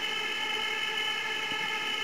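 A steady electronic synth chord, several tones held together without a beat: the intro of a pop song before its vocals come in.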